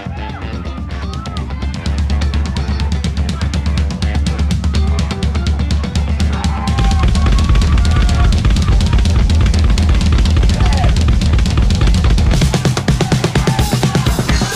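Full drum kit played with sticks in a driving groove of bass drum, snare and cymbals, with a band playing along. It grows louder about two seconds in and again about seven seconds in, and near the end it breaks into a choppier, stop-start pattern.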